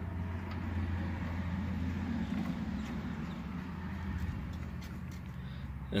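A steady low mechanical hum with a rumbling noise over it that swells over the first couple of seconds and fades toward the end.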